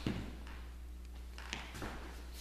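Low steady room hum with a light slap at the very start and a few faint taps about one and a half seconds in, from light hand and body contact as two people drill a strike combination.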